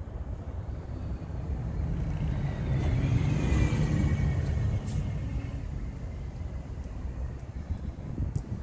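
A vehicle passing by. Its low rumble swells to a peak about three to four seconds in, with a faint falling whine as it goes past, over a steady low rumbling background.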